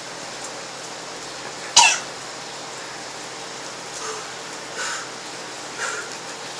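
A man coughs once, short and sharp, about two seconds in, then makes a few fainter throat noises, gagging as he tries to keep down raw egg he has just swallowed.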